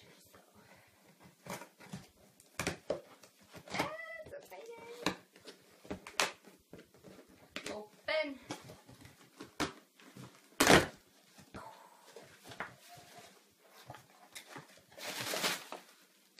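A cardboard shipping box being opened by hand: scattered taps, scrapes and rustles of cardboard. One sharp knock comes about ten and a half seconds in, and a ripping, rustling sound comes near the end as the box is pulled open. A voice murmurs briefly now and then.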